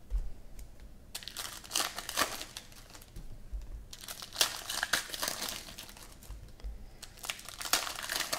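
Foil trading-card pack wrappers (2014 Panini Prizm football hobby packs) crinkling as the packs are handled, in two spells with a short lull about halfway and a few sharp clicks.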